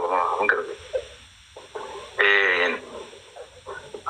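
A person's voice: a brief utterance at the start, then after a lull one drawn-out vocal sound of about half a second, wavering in pitch, a little past the middle.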